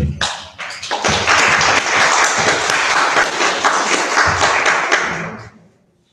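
Audience applauding: a dense patter of many hands clapping that swells about a second in, holds, and dies away near the end.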